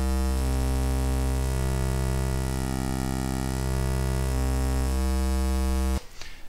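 Patchblocks mini-synthesizer holding one low, buzzy pulse-wave note whose tone keeps changing as its pulse width is modulated by hand. This is the traditional way of pulse-wave modulation. The note cuts off suddenly at the end.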